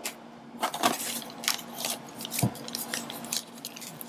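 Clear plastic packaging bags crinkling and crackling in irregular bursts as small packed accessories are handled, with one soft knock about two and a half seconds in.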